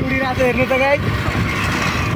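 Steady running noise of a moving vehicle, heard from on board, with a person's voice talking over it for about the first second.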